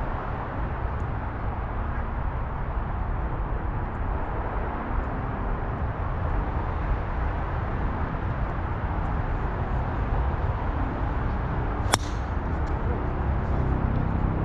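A golf tee shot: one sharp crack of the club striking the ball about twelve seconds in, over a steady low rumble.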